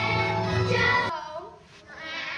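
Group of children singing along with a musical accompaniment, cutting off abruptly about a second in.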